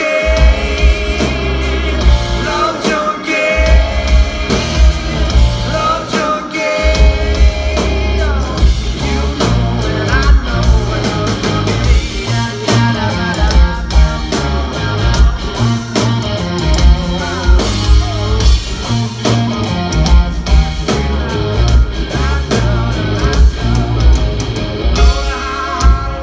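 A live rock band playing: electric guitars, bass guitar and a drum kit, with a male voice singing over them.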